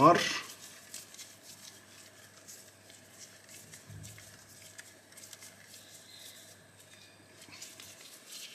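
Faint, scattered light clicks of a small screwdriver turning a short screw into the G10-and-steel-liner handle of an Ontario Model 1 folding knife, over a low steady hum.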